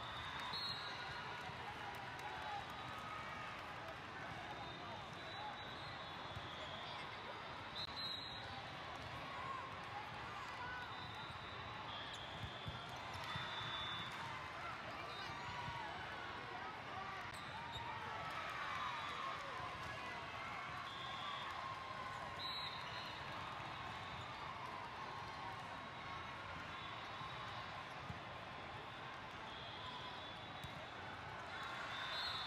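Steady hubbub of many voices across a large hall full of volleyball courts, with the thuds of volleyballs being hit and bouncing.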